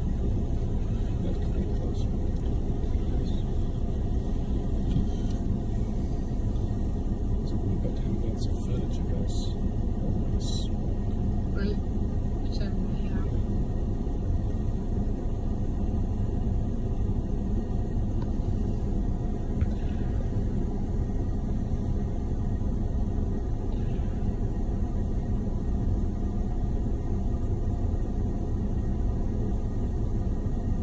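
Steady low rumble of vehicles running at idle, with a few faint light clicks between about eight and thirteen seconds in.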